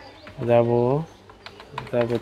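Computer keyboard keys clicking as text is typed, under two loud, low, held voice sounds from a man, each steady in pitch: one lasting about half a second and another starting near the end.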